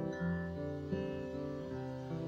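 Steel-string acoustic guitar playing softly sustained chords, with a new chord struck about a second in.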